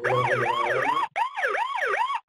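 Alarm alert of the ZKBioSecurity access-control software playing through the computer: a siren-like wail sweeping up and down about three times a second. It breaks off for an instant about a second in, then resumes. It sounds because the software has raised an alarm event.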